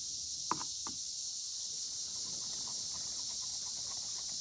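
Screwdriver tip picking and scraping at driftwood, with two short sharp scratches about half a second and a second in, then fainter ones, over a steady high-pitched insect drone.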